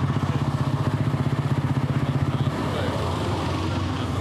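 A vintage cycle-car engine running with a fast, even beat; about two and a half seconds in the beat fades and a steadier, slightly quieter engine drone carries on.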